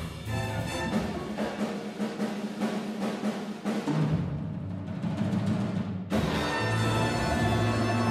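Jazz big band playing live: brass and saxophone sections over drum kit, piano and bass. About four seconds in the texture thins to a softer, lower passage, then the full band comes back in with a loud sustained chord about six seconds in.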